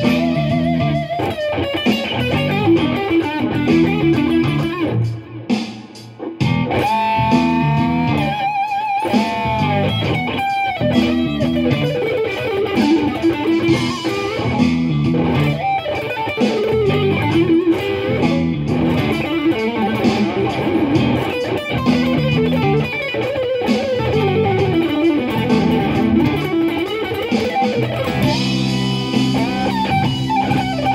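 Strat-style electric guitar playing an improvised lead over a backing track with a repeating chord and bass pattern. The lead has a long held note with vibrato about seven to nine seconds in, then runs of quick notes.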